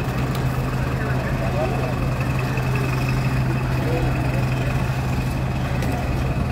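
Large truck's engine idling with a steady low hum, a thin steady high tone above it.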